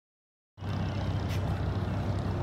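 A steady low engine-like rumble with hiss over it, cutting in suddenly about half a second in.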